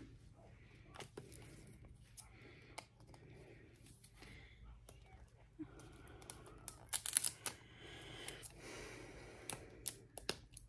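Fingers and fingernails picking at and peeling the plastic wrapping of a surprise ball: faint scattered clicks with small tearing and crinkling, and a louder burst of crackles about seven seconds in.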